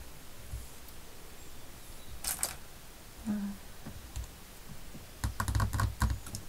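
Light clicks, taps and handling noises of hands working with craft pieces on a cutting mat: a few sharp clicks about two seconds in and a quick cluster of clicks and soft thuds near the end.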